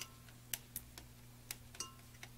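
Light clicks and clinks of a stick blender head and a spatula knocking against the mixing bowl as soap batter is stirred by hand with the blender switched off: about five sharp ticks, two with a short ring.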